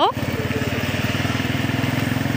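Motorcycle engine running steadily with an even, rapid pulse, heard from on the moving bike. A spoken word with a rising pitch ends right at the start.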